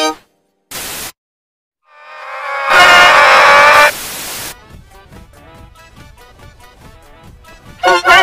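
Distorted meme-edit audio: a short burst of TV static, then a loud held pitched sound buried in hiss that swells up about two seconds in, more static hiss, and then faint music with a regular pulse.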